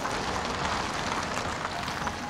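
Car driving along a street: steady road and traffic noise, an even hiss with no clear engine note.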